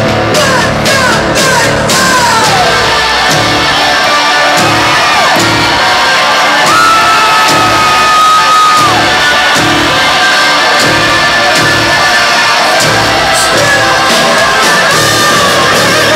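Rock band playing live at high volume: electric guitar with bending notes over a steady drum beat, with one long held note about halfway through.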